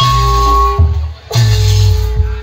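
Sundanese jaipongan ensemble playing: two deep drum-and-gong strokes about 1.3 seconds apart, each followed by ringing metallic tones.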